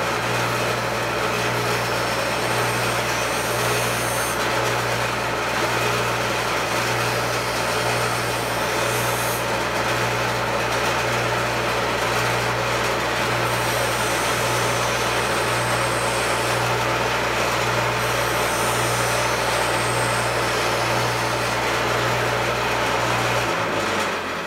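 Foley Belsaw Sharp-All knife grinder's motor and wheel running with a steady hum, while a utility knife blade is passed against the grinding wheel, a higher grinding hiss coming and going every few seconds. The grinder shuts off near the end.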